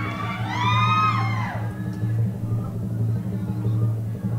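Audio of a short web video played over room speakers: a steady low drone, with a high voice crying out in rising and falling notes for about the first second and a half.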